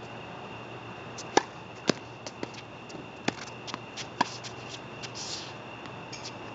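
Tennis ball bouncing and being handled on a hard court between points: irregular sharp knocks, the two loudest about a second and a half and two seconds in, then lighter taps and a brief rustle near the end, over a steady high whine.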